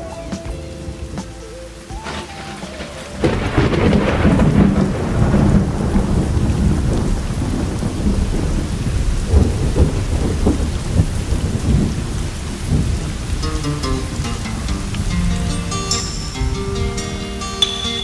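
Recorded thunderstorm sound effect: thunder rumbling over steady rain, the rumble swelling about three seconds in and easing off. Near the end a song's music comes in over the rain.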